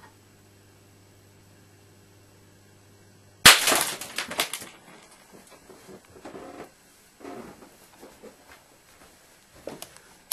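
A steady electrical hum from an overdriven 400-watt mercury vapour lamp cuts off at a sharp, loud bang about three and a half seconds in as the lamp bursts. About a second of crackling and tinkling glass follows and dies away, then a few scattered crackles.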